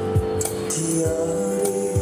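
Hawaiian hula music with a steady beat and long held notes.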